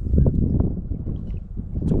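Wind buffeting the microphone, a loud uneven low rumble, with a few faint high chirps near the start.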